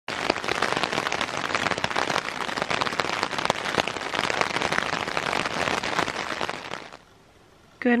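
Rain falling on a surface, a steady hiss dotted with many sharp individual drop impacts, fading out about seven seconds in.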